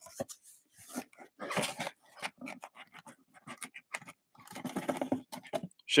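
Sealed cardboard trading-card hobby boxes being pulled out of a cardboard shipping case and stacked: a run of short, irregular scrapes, rustles and light knocks of cardboard on cardboard, busier near the end.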